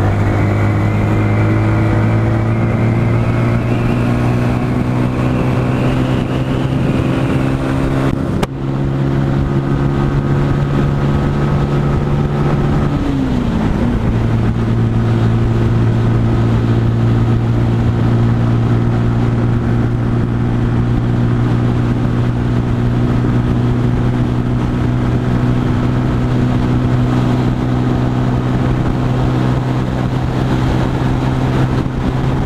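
Sinnis Outlaw 125cc motorcycle engine running at road speed, heard from the rider's seat. Its pitch climbs slowly over the first several seconds, with a brief dropout about eight seconds in and a short dip and recovery in revs about thirteen seconds in; after that it holds steady.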